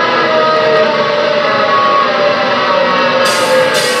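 A live rock band playing: held electric guitar notes, with the drum kit and cymbals coming in near the end.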